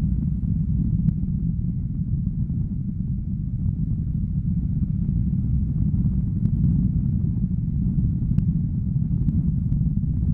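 Wind rushing over an action camera's microphone in paraglider flight: a steady low rumble with no let-up.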